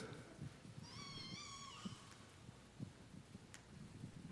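Near silence: room tone, with one faint, brief high-pitched wavering cry about a second in and a faint click near the end.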